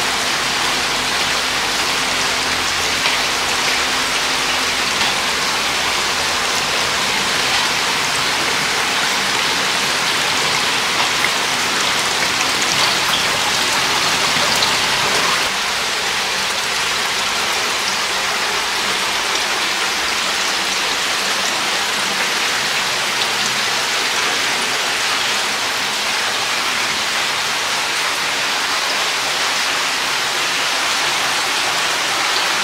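Steady rushing and splashing of running water as supply pipes pour into hatching jars of tilapia eggs and the jars overflow into trays. About halfway through, a faint low hum underneath drops away and the splashing carries on.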